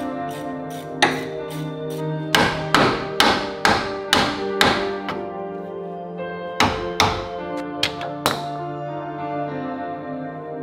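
A mallet striking a rusty front hub and wheel-bearing assembly in a steering knuckle: about a dozen sharp thuds in two runs, knocking the seized hub loose. Background music plays under the blows.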